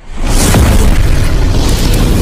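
Explosion sound effect of a logo intro: a loud boom hits just after the start and rolls on as a heavy rumble, over intro music.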